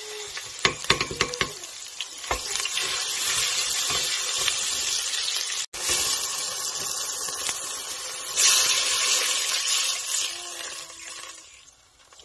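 Tomato paste and onions sizzling in hot oil in a stainless steel pot, with a wooden spoon scraping and knocking against the pot in the first couple of seconds. The sizzle grows louder about eight seconds in as liquid is poured onto the hot paste, then dies down near the end.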